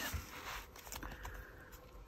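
Faint rustling and sliding of paper as hands shift and press a paper pocket and doily on a journal page.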